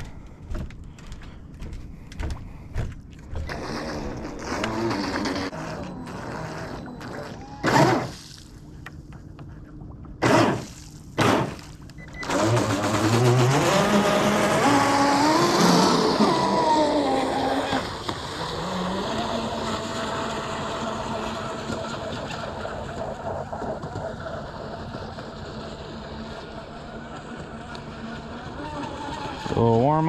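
Proboat Blackjack 42 RC boat's brushless motor and prop: three short throttle bursts, then a long run whose whine climbs steeply in pitch, drops back and holds a steady tone while slowly fading.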